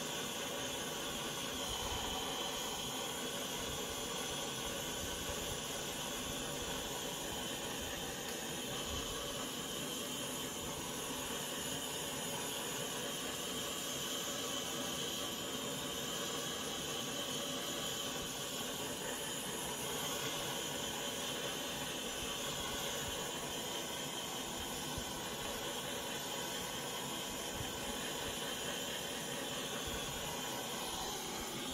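Handheld torch hissing steadily as it is passed over a wet acrylic pour, heating the paint to bring silicone cells up to the surface.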